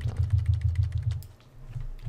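Computer keyboard keys clicking in a quick run for about a second and a half, repeated key presses deleting a line of text, over a steady low hum.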